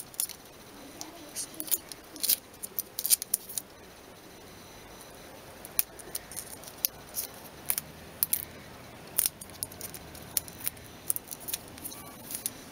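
Faint, irregular clicks and crackles from a tablet battery and adhesive tape being handled and pressed together by hand.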